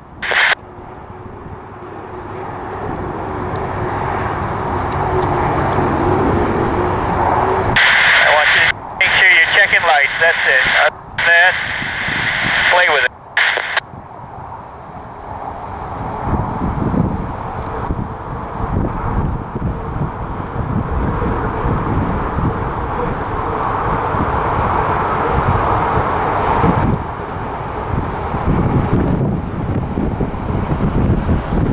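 Unlimited hydroplane's gas-turbine engine running at racing speed on the water: a steady roar with a whine that builds as the boat comes closer. A short burst of radio speech breaks in partway through.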